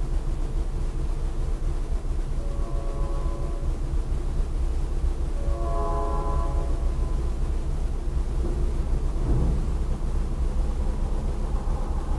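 A train horn sounding two blasts in the distance, the second a little longer, over a steady low rumble.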